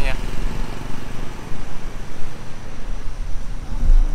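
Road traffic from cars passing on the road, with a low, uneven rumble of wind buffeting the microphone.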